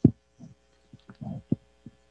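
Soft low thumps picked up close on a desk microphone: one sharp bump at the start, then about five fainter ones. A faint steady hum runs beneath them.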